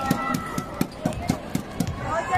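Rhythmic thumps on an indoor basketball court, about four a second, over crowd chatter.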